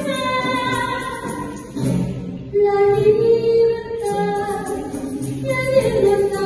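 Live band music with a woman singing long, held notes through a microphone over guitar and percussion, with a regular high tick running under the melody.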